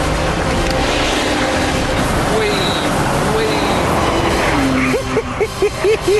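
Steady driving noise of an open-top roadster on the move: engine, road and wind noise at a constant level. A man laughs loudly in the last second.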